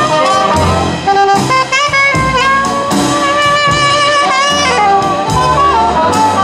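Jazz big band playing a slow feature number: a standing saxophonist solos a melodic line with bends and slides over sustained horn chords and bass.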